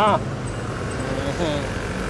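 Auto-rickshaw (tuk-tuk) engine idling close by, a steady low hum, with a short spoken 'ah' at the start and a brief word about halfway through.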